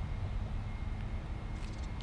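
Quiet outdoor background: a low, uneven rumble with a faint thin high tone, and no distinct event.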